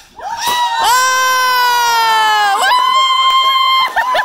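Loud, high-pitched cheering cries. One long held note sinks slightly, then jumps higher a little past halfway and holds until near the end.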